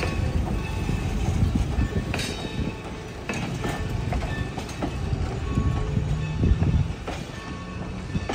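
Vintage railway passenger coaches rolling past on the track: a low rumble from the steel wheels, with irregular clicks and clanks over the rail joints and brief thin squeals.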